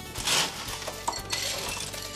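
Ice cubes clattering and clinking into a glass in two rushes, the first just after the start and the second a little past halfway.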